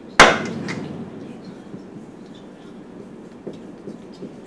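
A single sharp knock just after the start, echoing briefly in the room, followed by a few faint ticks of a marker writing on a whiteboard near the end.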